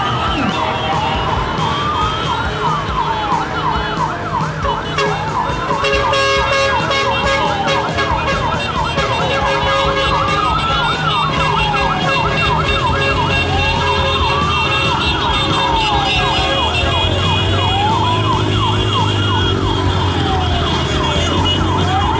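Emergency vehicle sirens: a slow wail rising and falling about every four seconds, overlaid with a faster repeating warble. Both stop suddenly at the end.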